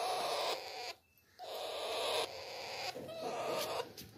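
Raspy, hissing calls of young Alexandrine parakeets, in two long stretches with a short break about a second in.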